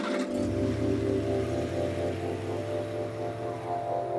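Background music of sustained, held chords, with a low steady hum underneath from about half a second in.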